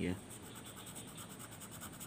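Pencil scribbling on paper, shading a small patch with quick, even back-and-forth strokes.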